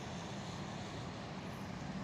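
Steady, fairly quiet low hum and rumble of vehicle engine and traffic noise, unchanging throughout.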